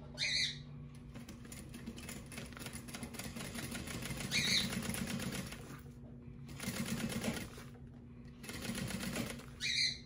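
Juki industrial sewing machine stitching at speed through vinyl and fabric, a fast, even run of needle ticks that stops briefly twice. Three short higher-pitched sounds come near the start, midway and near the end.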